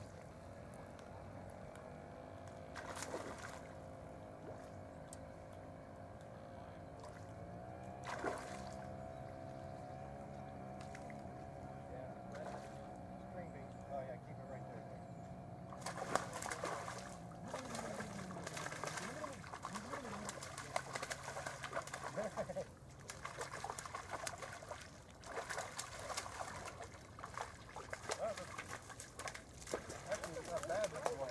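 A steady, distant engine hum for about the first half, shifting slightly in pitch about eight seconds in. In the second half faint, broken voices and bird calls take over, with small knocks and water sounds.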